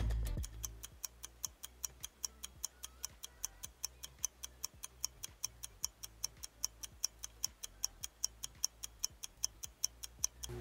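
Ticking-clock sound effect accompanying a countdown timer: quick, even, sharp ticks about four a second.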